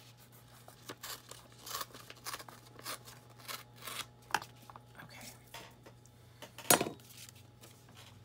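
Paper being torn along a steel ruler in a series of short rasping pulls, with one sharp knock about two-thirds of the way in. A faint steady hum runs underneath.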